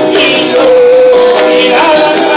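A man sings a Spanish-language worship song into a microphone, holding one long note through the middle, over instrumental accompaniment.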